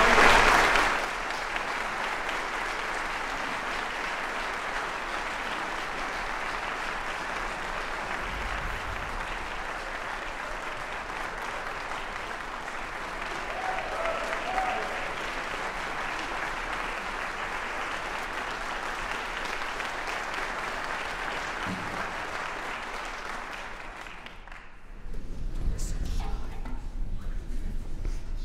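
Audience applauding steadily in a concert hall, the clapping dying away near the end.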